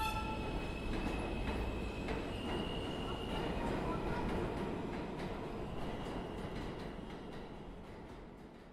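A steady low rumbling noise with a few faint steady high tones and light ticks, fading out gradually over the last few seconds.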